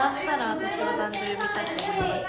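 A young woman's voice talking, with a quick run of sharp claps or taps a little past a second in.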